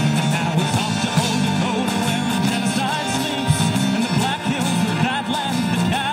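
A live band playing a folk-rock song: a singer with strummed acoustic guitar, violin, bass guitar and drums, amplified through a small PA.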